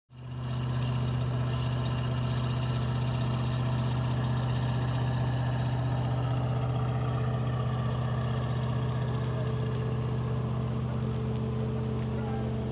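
Fire engine's engine running at a steady speed: a low, even drone that fades in at the very start and holds unchanged.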